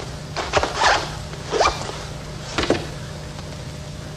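Objects being handled at a desk: a few short scrapes and rustles, one of them a quick rising sweep like a zip or a sliding part, over a steady low hum.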